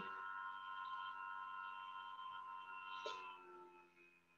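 A faint ringing tone of several steady pitches that slowly fades away toward the end, with a small click about three seconds in.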